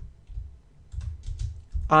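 Computer keyboard typing: a quick run of keystrokes, short sharp clicks, as a sentence is typed. A man's voice begins a word right at the end.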